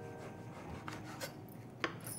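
Kitchen knife cutting the crust off a slice of white sandwich bread on a wooden chopping board: a faint rasping as the blade saws through the crust, with a few light taps of the knife on the board, the sharpest near the end.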